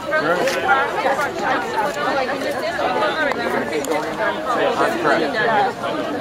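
Chatter of a small crowd: several people talking over one another at once, with no single voice standing out.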